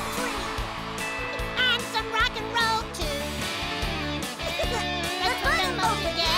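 Upbeat band instrumental break mixing country and rock, with guitars and a drum kit playing.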